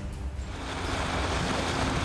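Rushing water and wind from an outboard-powered inflatable boat underway at speed, building about half a second in and then holding steady.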